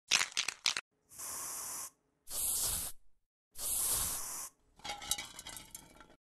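Spray-paint can sound effect: a few quick clicks, then three short hisses of spray about a second each, followed by a fainter crackling patter near the end.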